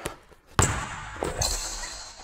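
A basketball bouncing hard on a hardwood court, with a sharp bounce about half a second in, then the noise of a player's footwork as he drives in for a finish. The sound rings on in a large, echoing gym.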